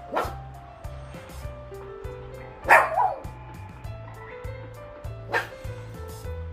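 A puppy giving short, high yips and barks: one near the start, two close together in the middle and one near the end, begging for food at the table. Background music with a steady low beat runs underneath.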